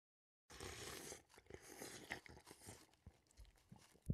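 Faint crunching, chewing-like sound effect that starts about half a second in, with scattered small crackles.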